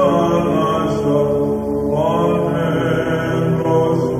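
Greek Orthodox Byzantine chant: a hymn to the Virgin Mary, sung as a gliding melody over a steady held low note.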